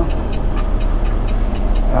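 Peterbilt semi-truck's diesel engine idling steadily, heard from inside the cab.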